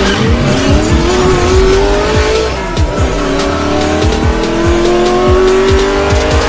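Intro music with a race-car engine sound effect over a beat of repeated low hits. The engine pitch climbs, drops once about three seconds in like a gear change, and climbs again.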